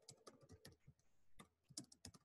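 Faint typing on a computer keyboard: an uneven run of key clicks with a short pause about a second in.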